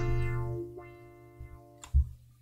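A held synthesizer note playing through Thor's low-pass ladder filter in Reason, losing its brightness and fading out over the first second and a half or so, then a single sharp click.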